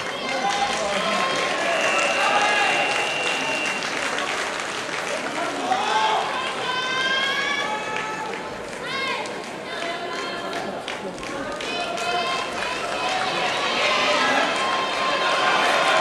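Several men shouting calls and encouragement from the sidelines, their voices overlapping and some held long and high-pitched.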